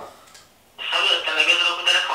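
A voice coming through a phone's loudspeaker, tinny and with a steady whistle-like ring on top, starting about a second in after a brief lull.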